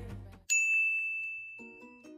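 The tail of the intro music fades out, then a single bright, high chime-like ding strikes about half a second in. It rings on one clear pitch and slowly dies away: an editing sound effect on the intro title card.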